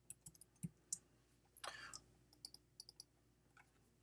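Faint keystrokes and clicks from a computer keyboard and mouse as a word is typed and text selected: two quick clusters of sharp taps, with a short soft hiss between them.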